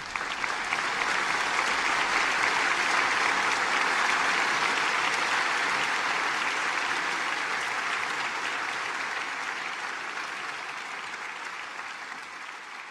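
Audience applauding: the clapping builds within the first second, holds steady, then slowly fades away.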